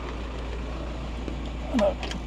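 VW T5 Transporter engine idling, a steady low rumble heard from inside the cab.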